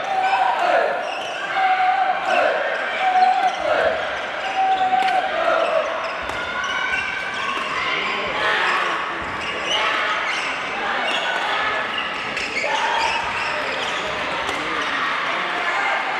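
Shouted voices ringing in a large sports hall during a badminton doubles match: a short call repeated about once a second for the first six seconds, then many overlapping voices. Sharp knocks run through it, from shuttle hits and shoes on the wooden court.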